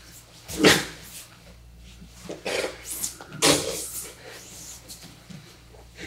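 Several short strained grunts and forceful breaths from grapplers straining in close contact, the loudest about half a second in and three more between two and four seconds in.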